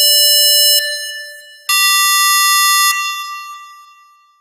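Synthesizer notes from FL Studio's Harmor, played one at a time on its keyboard. A held note stops a little under a second in and fades away. A higher note, about an octave up, then sounds for just over a second and fades out near the end.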